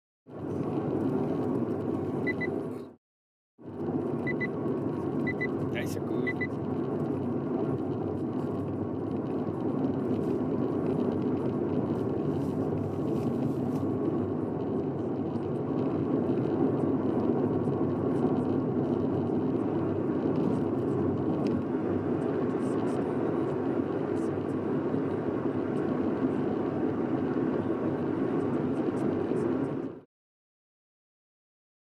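Steady road noise inside a moving car's cabin: tyres on the highway and the engine running. The sound cuts out briefly about three seconds in.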